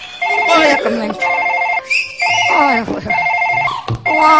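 A mobile phone ringtone ringing in short repeated bursts of a trilling electronic tone, about one burst a second, with a woman's voice over it.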